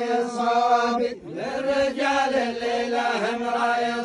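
A group of men chanting in unison in a traditional taktheera folk chant, holding long drawn-out notes. The chant breaks off briefly about a second in, then resumes.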